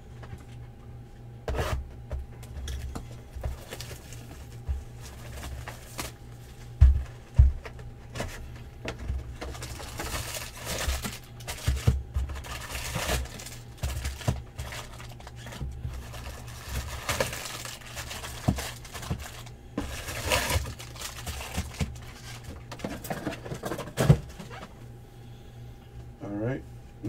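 A cardboard trading-card hobby box being opened by hand, its flaps tearing and folding back, and the wrapped card packs crinkling and rustling as they are pulled out and set down in rows, with two dull thumps about seven seconds in.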